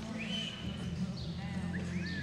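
Horse working on the soft dirt of an indoor arena as it finishes a spin and comes to a stop, under a steady low hum, with a few short high chirps gliding up and down in pitch.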